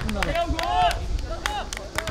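Players' voices shouting short calls across an outdoor football pitch, the loudest call a little under a second in, over a string of sharp, irregular clicks or claps.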